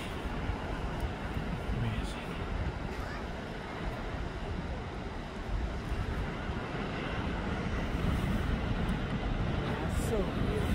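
Ocean surf breaking and washing over rocky shoreline, a steady low noise with wind on the microphone, swelling a little near the end.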